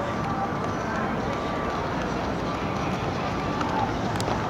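Steady outdoor city street background noise, with faint distant voices.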